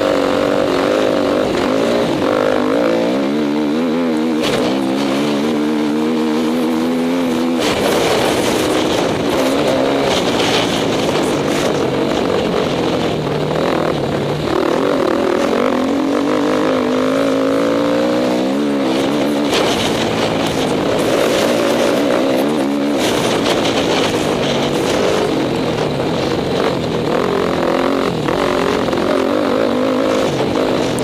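Enduro motorcycle engine heard close from on board, its pitch climbing as it accelerates and dropping back several times as the rider shifts and brakes, over a steady rush of wind noise.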